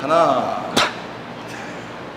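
A short bit of a man's voice, then a single sharp clack just under a second in, typical of the plate-loaded machine's handle or weight arm knocking as it is worked.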